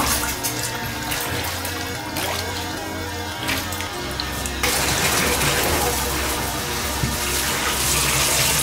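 Background music with a steady beat. About halfway through, water starts pouring steadily into a bathtub from the tap, a loud, even rush over the music, as the tub is refilled with clean water for a rinse.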